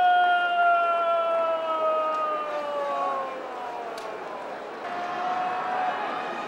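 A man's long, drawn-out chanted call in the sumo ring, the traditional sung announcement of a wrestler's name. One held note sinks slowly in pitch over about three seconds, and a second note is taken up near the end, over a faint murmur of the crowd.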